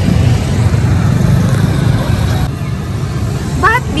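Street traffic noise: a steady low rumble of passing motor vehicles, easing a little about two and a half seconds in.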